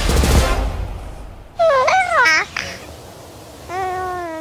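A baby babbling in a short high, rising-and-falling burst about a second and a half in. A held vocal note follows near the end.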